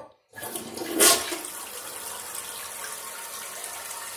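1989 Kohler Wellworth toilet flushing with its siphon jet blocked. Water rushes in about a third of a second in, loudest about a second in, then settles into a steady rush as the water swirls around the bowl.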